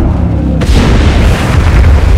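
Film sound effect of giant sandworms erupting from the sand: a deep, continuous rumble, joined about half a second in by a sudden loud burst of noise that keeps going.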